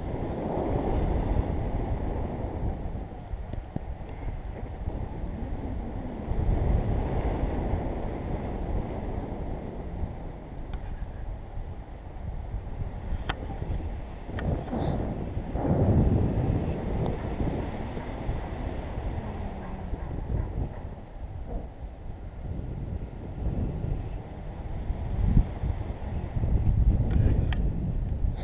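Airflow buffeting the camera's microphone during a paraglider flight: a low rushing wind noise that swells and eases in gusts.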